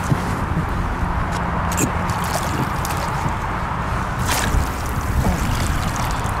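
Water splashing and sloshing as a hooked common carp is played at the surface and scooped up in a landing net, with water pouring off the net near the end. It sits over a steady rushing noise, and there is one sharp splash-like hit about four seconds in.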